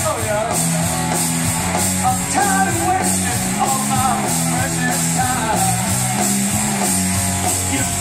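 Rock band playing live: electric guitars, bass and drum kit, with cymbals keeping a steady beat.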